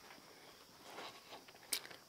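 Faint footsteps on a dirt floor as the camera operator walks, with one short sharp click near the end.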